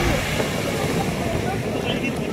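Steady wind noise on the microphone over the wash of small waves breaking on a sandy beach, with faint distant voices.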